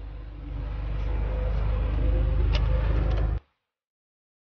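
A WEY SUV's engine heard from inside the cabin, its low rumble growing steadily louder as the car pulls away and accelerates, with a few light clicks partway through; the sound cuts off suddenly near the end.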